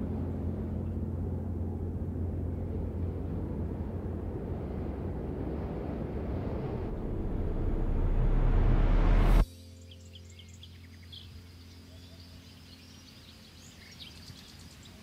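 Sound-design sting for an animated logo: a low steady drone with a noisy hiss that swells into a rising whoosh and cuts off suddenly about nine and a half seconds in. Afterwards, faint quiet ambience with a few high bird chirps.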